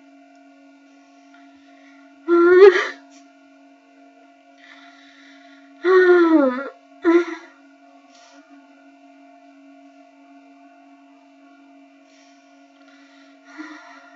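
A young woman crying: a long, voiced sob about two seconds in and another about six seconds in that falls in pitch, then a short catch right after, over a steady hum.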